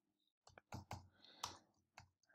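Faint typing on a computer keyboard: several separate keystrokes clicking over about a second.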